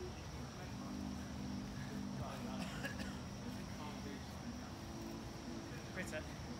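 Quiet outdoor night ambience: faint, indistinct men's voices with a steady high-pitched insect drone and a low steady hum underneath.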